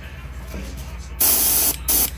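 Airbrush spraying paint: a burst of hiss a little over a second in, a brief break, then a second short spray near the end, over a steady low hum.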